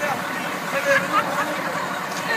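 Voices of a group of young people, with short high-pitched calls over a steady low background hum.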